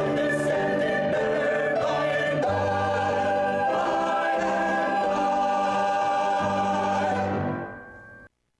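Mixed choir of men and women singing a gospel song with piano accompaniment, closing on long held notes that fade away near the end.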